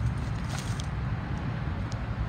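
The 2.0-litre four-cylinder engine of a 2011 Ford Focus SE idling, a steady low hum.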